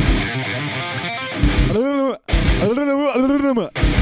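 Homemade rock song with electric guitar and drums; about halfway through, a voice comes in singing long, wavering notes, and the sound cuts out briefly twice.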